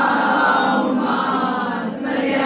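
A group of voices singing a devotional chorus together in unison, drawing out long held notes.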